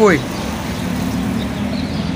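Steady low motor drone holding one even pitch, over a faint background hiss.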